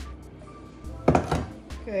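Background music with a soft steady beat; about a second in, a single knock as a small glass bowl is set down on a stone countertop.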